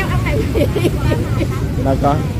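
Busy street-market ambience: motorbikes running through the lane and people talking in the background, over a steady low rumble.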